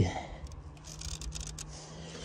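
Faint handling noise of plastic car-bumper grille parts, with a few light clicks in the first second or so over a faint steady low hum.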